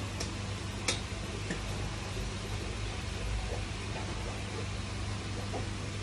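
Steady low electrical hum with a hiss over it, and a couple of faint clicks about a second in.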